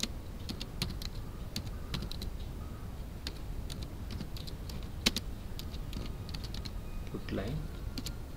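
Typing on a computer keyboard: irregular key clicks, with one sharper keystroke about five seconds in.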